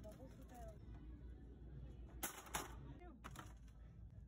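Small packaged toys dropping into a red plastic shopping cart: two sharp clatters in quick succession a little past halfway, then a softer one about a second later.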